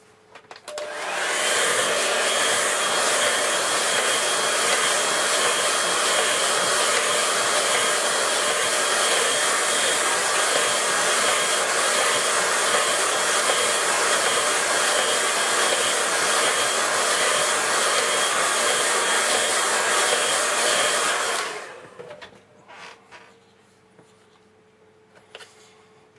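Handheld hair dryer blowing steadily with a faint whine, drying wet watercolour paint. It switches on about a second in and cuts off a couple of seconds before the end.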